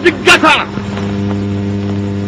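A man's loud, shouted speech over microphones breaks off about half a second in, leaving a steady low electrical hum with a faint hiss from the old recording.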